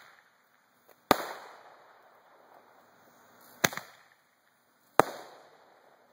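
Roman candle firing three shots, each a sharp pop followed by a fading echo: about a second in, a few seconds later, and once more about five seconds in.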